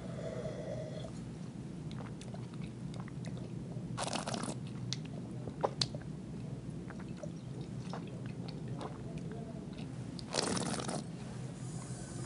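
A person tasting wine: wet mouth clicks as it is sipped and moved around the mouth, with two longer hissing slurps, about four seconds in and near the end, as air is drawn through the wine.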